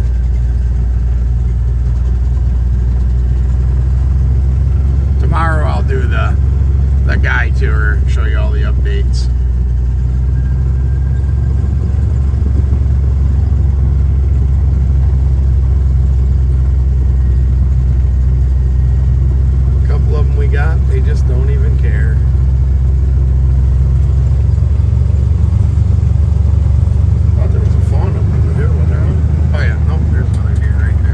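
A side-by-side buggy's engine running with a steady low drone as it drives along a dirt farm track.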